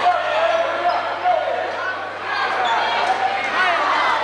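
A basketball bouncing on a hardwood gym court during play, under the chatter and shouts of a crowd in the stands, with a steady low hum throughout.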